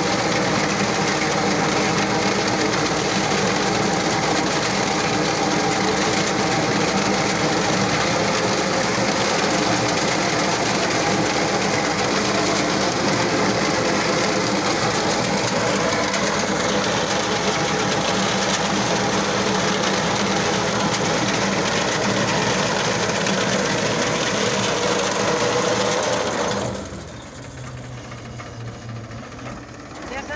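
Tractor-mounted reaper cutting standing wheat: its reciprocating cutter-bar knife and drive run together with the tractor engine in a steady, loud mechanical chatter. About 27 seconds in the sound drops sharply, leaving a quieter low tractor engine hum.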